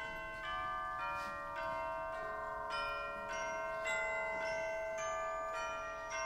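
Mallet percussion with a bell-like sound, tubular chimes with brighter bells above, playing a slow line of single struck notes a little under two a second. Each note is left ringing, so the notes overlap.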